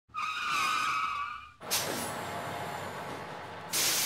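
Vehicle sound effects for a title sting: a wavering tire squeal for about a second and a half, then a sudden noisy burst that falls in pitch and fades into a rush of noise, and a short burst of hiss near the end.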